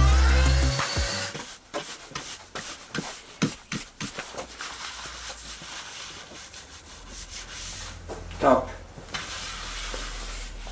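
Background music ending in the first second, then a run of scattered knocks and taps as wooden pieces are handled, followed by soft rubbing as a hand brush sweeps router chips off an oak board.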